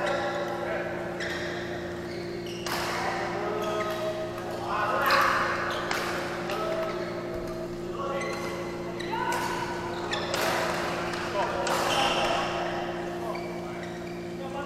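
Badminton rackets striking a shuttlecock in a doubles rally, sharp hits a second or two apart, in a large echoing sports hall. Voices chatter around the courts over a steady low hum.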